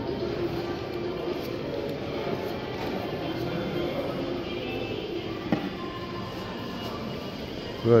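Indoor shopping-centre ambience: faint background music over a murmur of distant voices, with one sharp click about five and a half seconds in.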